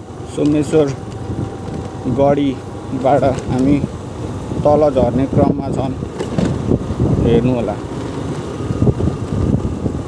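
A person talking in short phrases over a steady low rumble.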